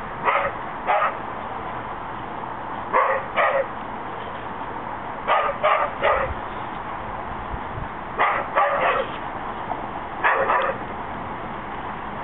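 A dog barking in quick groups of two or three barks, a new group every two to three seconds.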